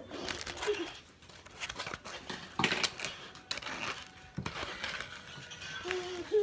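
A plastic bag rustling and crinkling as it is handled, in irregular bursts, loudest between about two and a half and three and a half seconds in.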